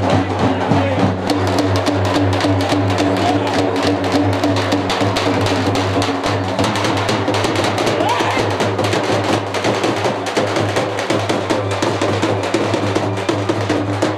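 Music with fast, dense drumming throughout, over a steady low hum.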